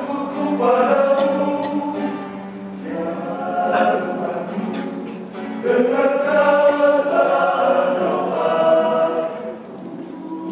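Men's vocal group singing a worship song in harmony, in long held phrases.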